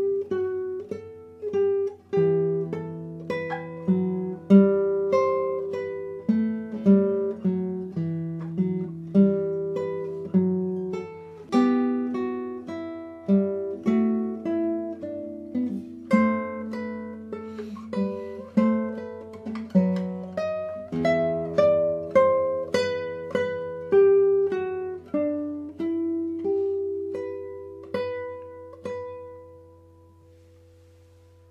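Solo guitar playing a movement of a guitar sonata: a plucked melody over bass notes and chords, closing on a held chord that rings out and fades away near the end.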